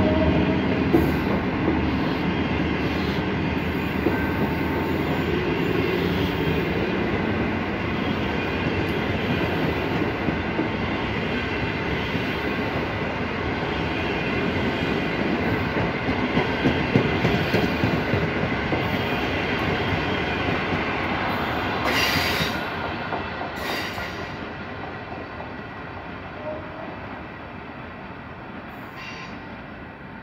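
Passenger coaches of a locomotive-hauled train rolling past at speed, a steady dense noise of wheels on rails. A little past the middle there are a couple of sharper bursts, and then the sound fades away as the train recedes.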